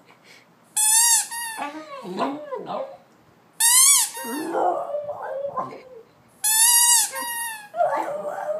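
A squeaky dog toy squeezed three times, each a sharp two-part squeak, and after each a Boston terrier howling along in a wavering, yodel-like voice that bends up and down in pitch.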